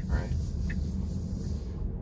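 Low, steady road rumble with a high hiss inside the cabin of a Tesla electric car as it pulls out onto a highway. The hiss drops away near the end.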